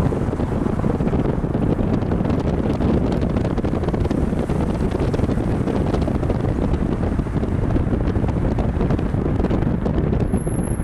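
Wind buffeting the microphone of a camera held out of a moving car's window: a steady, loud rushing rumble.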